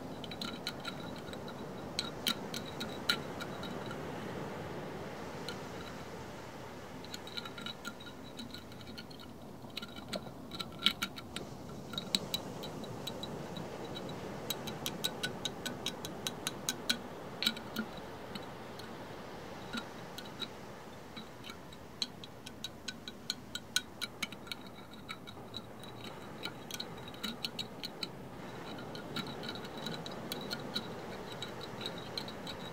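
Fast fingertip tapping on a hard object: irregular runs of quick, sharp clicks with a short ringing note, over a steady background hiss.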